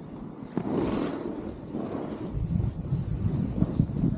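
Snowboard sliding and carving through soft fresh snow, mixed with wind noise on the microphone; it grows louder about two seconds in.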